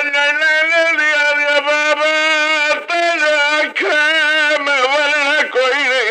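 A man's voice chanting a masaib mourning elegy in long, held melodic notes, with a wavering vibrato near the end. The sound is thin, as on an old tape recording.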